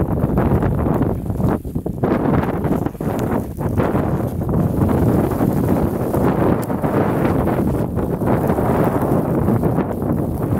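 Strong gusty wind buffeting the microphone in an Arctic blizzard: a loud, uneven rushing that rises and falls, with a few brief lulls.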